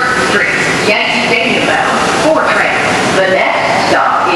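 Recorded announcement voice over an R142 subway car's public-address system, heard inside the stopped car above the car's steady running noise.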